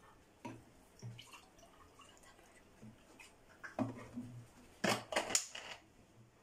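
Water poured from a plastic bottle into a drinking glass, with short knocks of bottle and glass handling. A quick cluster of louder knocks and rattles comes near the end as the bottle's cap is handled.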